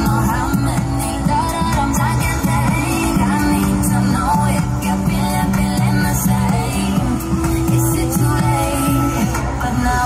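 Pop dance music with singing over a steady beat, played loud.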